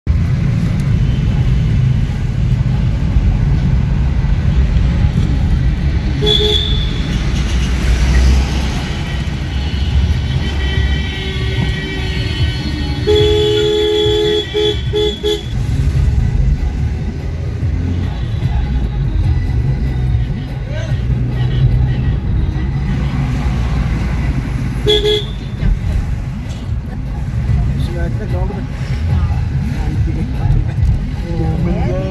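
Steady low road rumble heard from inside a moving car, with car horns honking over it: a short toot about six seconds in, a run of several honks around the middle, and another short toot near the end.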